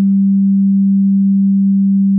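Electronic music: one low synthesizer note held steadily.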